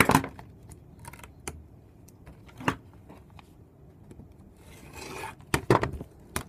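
Handling clicks and knocks of a steel rule and rotary cutter on a cutting mat, the loudest right at the start, with a short scraping stroke shortly before the end as the blunt rotary cutter is run again through theraband that it did not cut through in one pass.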